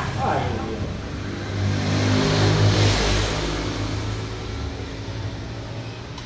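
A motor vehicle driving past on the street, its engine and tyre noise building to a peak about three seconds in and then fading away.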